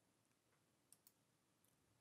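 Near silence with a faint computer mouse click about a second in, heard as two quick ticks close together, and a fainter tick a little later.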